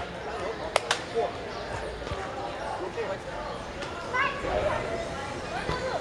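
Indistinct chatter of several teenagers' voices, with two sharp knocks about a second in.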